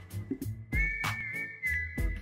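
Background music: a whistled melody held over a steady drum beat and bass, the whistle coming in about a third of the way through.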